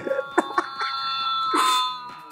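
A steady electronic alarm-like tone, several pitches held together, played back through a smartphone's small speaker, with laughter over it.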